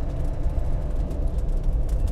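Steady low drone of engine and road noise heard inside the soft-top cabin of a Land Rover Defender 90 on the move.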